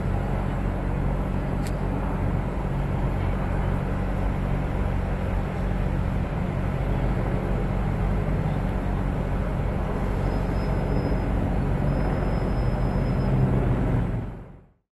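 City traffic: a steady rumble of street noise with a low engine hum underneath. A single sharp click comes about two seconds in, and a thin high whine sounds twice near the end.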